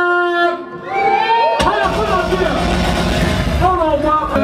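An MC's voice calling out long, drawn-out sounds through the club PA, the first call held on one note. Bass from the backing beat drops out and comes back in about a second and a half in, with some crowd noise under it.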